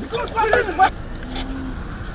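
Voices during a rough arrest for the first second or so, then steady street and traffic noise, with a faint brief hum.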